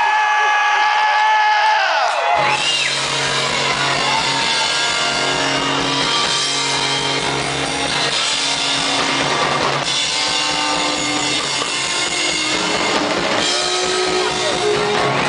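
Live rock band playing: acoustic and electric guitars with drums. For the first two seconds there is only a held high tone, then the full band comes in with a steady low end.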